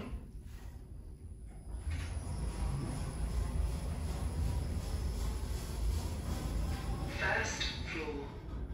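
An OTIS GeN2 gearless lift car setting off and travelling down: a low, steady rumble that builds about two seconds in. There is a brief hiss near the end.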